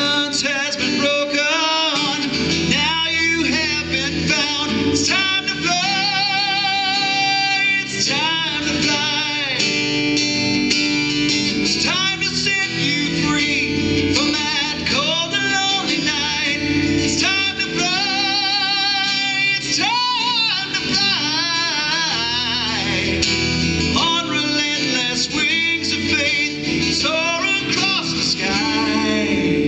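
A man singing with vibrato on long held notes, accompanying himself on a strummed acoustic guitar.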